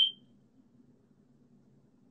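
A single short, sharp, high-pitched ping at the very start that dies away within a fraction of a second, over a faint low hum.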